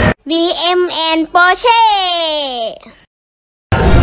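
A child's voice sings out "Bm and Porsche" in a few held syllables, the last one drawn out and gliding down in pitch. A moment of silence follows, and music starts near the end.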